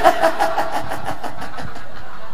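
A man laughing hard: a fast, even run of short breathy pulses that trails off after about a second and a half.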